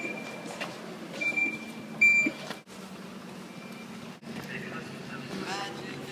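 Crowd chatter with short, high electronic beeps repeating over it during the first two seconds. The sound then cuts off abruptly twice, and voices follow with a busy background.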